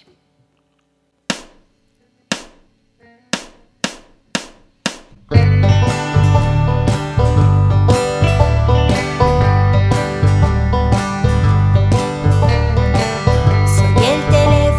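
A count-in of six sharp clicks, two slow then four quick, then a country band comes in together at full volume: strummed acoustic guitar and electric guitar over drums and bass.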